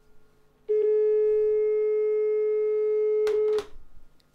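Telephone dial tone coming through the studio's phone line into the broadcast: one steady, unbroken tone that starts about a second in and cuts off with a click near the end.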